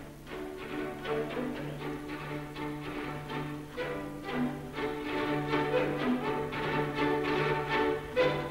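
Orchestral music with bowed strings playing sustained notes over a held low note, growing louder toward the end.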